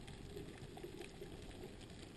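Faint underwater ambience picked up through a camera's waterproof housing: a low, even rumble of water with scattered faint ticks and crackles.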